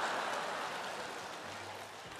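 Studio audience applauding after a punchline, the clapping dying away over the two seconds.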